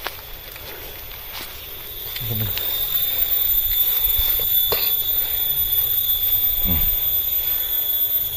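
A man's voice making two short sounds with a falling pitch, one at about two seconds in and one near the end, over a steady outdoor background noise that grows louder about two seconds in.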